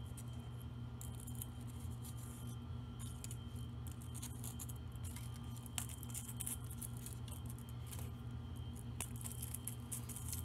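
Small glitter Christmas ball ornaments on wire stems clicking and clinking lightly against each other and the wires as they are gathered in the hands, over a steady low hum.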